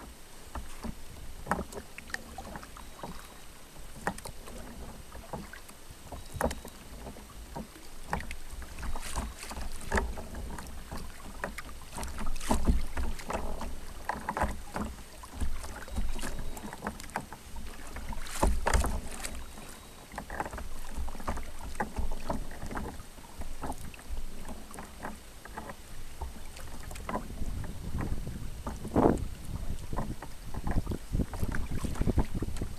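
Kayak paddle strokes splashing and dripping in the water at irregular intervals, a couple of them louder, over a low rumble of wind on the microphone.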